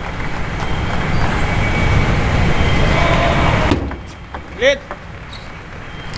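Loud, dense crowd noise in the arena, cutting off suddenly a little past halfway, followed by a single short shout about a second later.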